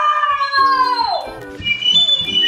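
A young girl's long, high-pitched squeal that slowly falls in pitch and breaks off about a second in, over background music with short repeated notes. Laughter follows near the end.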